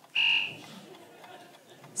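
Quiz-show contestant buzzer sounding once, a short steady electronic tone lasting about a third of a second, followed by faint studio room noise.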